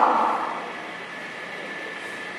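A woman's voice trails off into the room's echo at the start, leaving a steady background hiss of the room with a faint steady tone.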